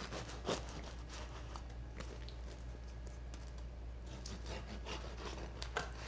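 Bread knife sawing through the crust of a levain loaf on a wooden cutting board: a steady scraping of the blade through the crust with scattered small clicks.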